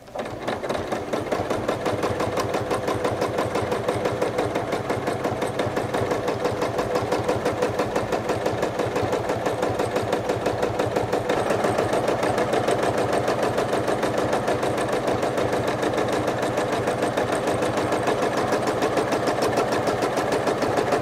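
Domestic sewing machine free-motion quilting: the needle stitching continuously at a fast, even rate, starting at once and keeping a steady speed.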